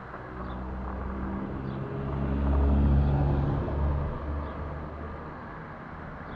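A motor vehicle drives past close by, its low engine rumble swelling to a peak about halfway through and then fading away.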